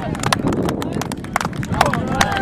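Rapid, irregular sharp clicks and knocks over a rumbling background, with faint shouting voices.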